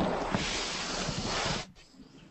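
Loud rushing hiss of microphone noise coming through an online video call, with a faint voice buried under it. It cuts off suddenly near the end.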